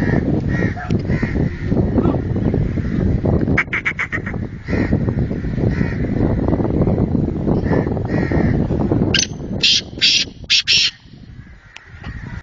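Caged francolin (titar) calling over and over in short high notes. A quick run of loud, piercing calls comes about four seconds in, and another toward the end. Heavy low background noise runs beneath and drops away near the end.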